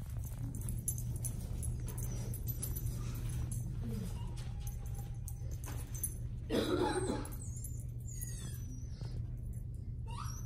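A small dog whining faintly now and then over a steady low hum, with a short, louder sound about seven seconds in.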